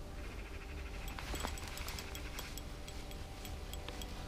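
Shimano Soare CI4 spinning reel being cranked on a slow retrieve, a fine rapid ticking from its gears with scattered sharper clicks, over a low steady rumble.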